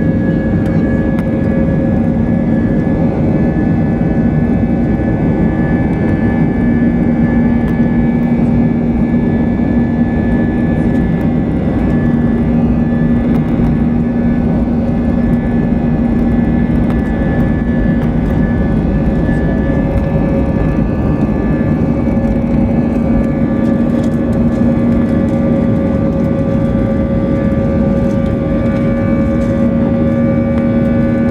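Airbus A320-200's twin jet engines at takeoff power, heard inside the cabin over the wing: a loud steady rush with several steady whining tones through the takeoff roll and liftoff.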